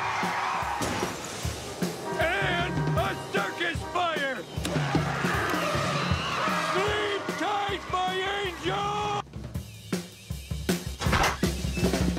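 Cartoon sound mix of a drum kit played loudly with steady bass-drum beats, together with a white noise machine playing recorded rush-hour traffic. Several rising, bending tones sound over the drumming. Everything drops away briefly shortly before the end, then comes back loud.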